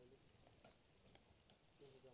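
Near silence: faint outdoor background with a few faint, short clicks.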